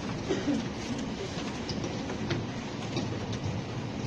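Steady background noise, a low rumble and hiss, with a few faint clicks and a brief faint murmur early on.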